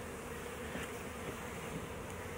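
Steady, fairly faint hum of honeybees in an open hive, a colony that is queenless.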